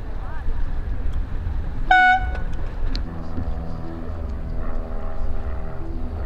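A single short horn blast, one clear tone lasting about a quarter of a second, about two seconds in. Under it is a steady rumble of wind on the microphone.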